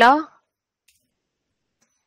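A spoken word ends at the very start, then near silence broken by a faint single keyboard keystroke about a second in and a fainter one near the end.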